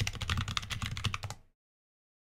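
Fast typing on a computer keyboard, a quick run of keystrokes that stops about one and a half seconds in.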